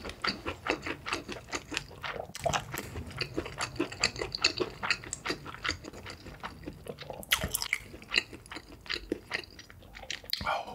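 Close-miked chewing of a mouthful of food with the lips closed: quick wet clicks and smacks of tongue and lips, about four a second, with one louder smack about seven seconds in.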